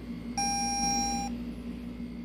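Toyota Camry instrument cluster warning chime: one steady, clear beep lasting about a second. It sounds with the 'Parking Brake Malfunction' warning on the cluster's display.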